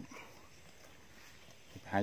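A man's voice at the start and end, with a pause between them of near silence and faint open-field ambience.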